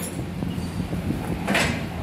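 Workshop background noise: a steady low hum, with a short hiss or scrape about one and a half seconds in.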